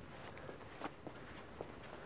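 Footsteps of a person walking on pavement, a few separate steps over a faint steady hiss.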